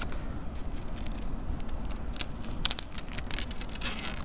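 Protective plastic film crackling as it is peeled off an iPod Touch's glass screen, with a few sharp crackles in the second half, over a steady low rumble.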